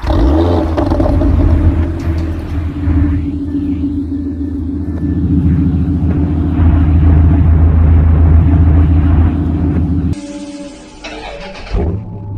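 A car engine idling with a deep, steady rumble. It drops away abruptly about ten seconds in, followed by a short loud burst near the end.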